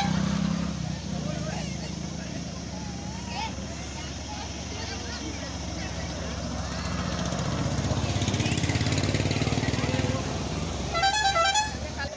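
Roadside traffic: a steady engine rumble from passing trucks and motorbikes that swells as a vehicle goes by about two-thirds of the way through. A vehicle horn gives several short honks near the end, over faint voices.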